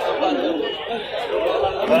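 Several people talking over one another: steady background chatter with no single clear speaker.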